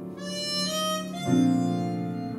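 Harmonica playing a rising melody of held notes over grand piano accompaniment in a jazz arrangement. A new piano chord comes in just over a second in.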